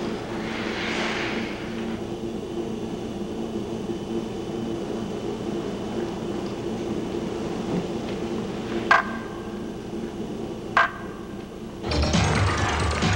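Ice-rink ambience with a steady low hum, a swish of ice skates on the ice in the first couple of seconds, then two sharp knocks about two seconds apart near the end.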